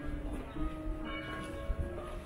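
Church bells ringing: several struck notes that overlap and ring on, each note held for about a second.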